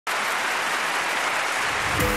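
Audience applauding, a steady even clatter of many hands.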